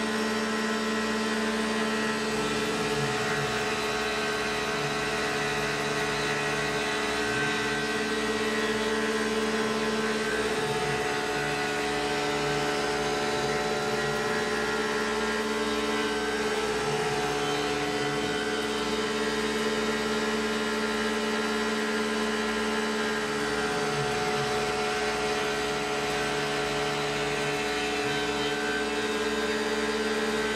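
Tormach PCNC 1100 CNC mill's spindle driving an endmill through aluminium while decking off leftover stock in an adaptive roughing pass. It makes a steady machine whine of several held tones, with a lower hum that comes and goes every few seconds with brief slides in pitch.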